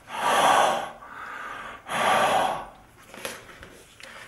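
A person blowing two long breaths out close to the microphone, one at the start and one about two seconds in, each a rushing hiss. He is breathing onto a humidity sensor to make its humidity reading rise.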